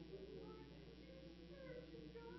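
Faint, indistinct voices of several people praying aloud, over a low steady hum.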